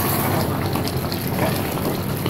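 Chicken masala gravy cooking in a steel pressure pan on the stove while a ladle stirs it: a steady hiss with no distinct strokes.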